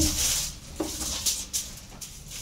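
A sheet of aluminium foil crinkling as it is spread flat by hand: a short rustle at first, then faint rustles and light taps.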